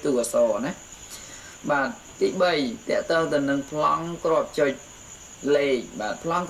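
A person speaking in Khmer with short pauses, over a faint steady high-pitched whine.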